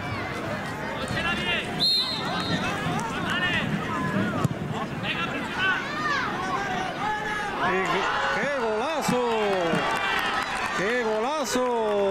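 Overlapping shouts and calls from children and adults during a youth football game. A louder voice shouts out twice in the second half, and there is a single sharp knock about two seconds in.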